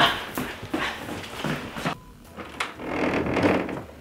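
Hurried footsteps and short knocks in the first half, then a door being opened near the end.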